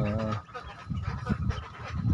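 Young Pekin ducklings calling, with one stronger call at the start and quieter sounds after it.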